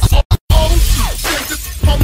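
Hip hop track in a DJ mix that cuts out twice in quick succession, then slams back in with a noisy, crash-like hit and a short falling sweep about a second in.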